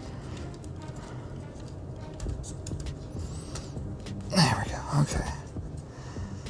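Light clicks and taps of laser-cut plywood parts being handled and pushed together while a wooden model clock is assembled. About four seconds in there is a short muttered vocal sound from the builder.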